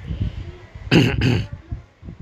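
A man clears his throat in two short, harsh bursts about a second in.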